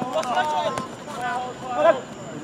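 Voices calling out across an open playing field, with a few short, sharp knocks.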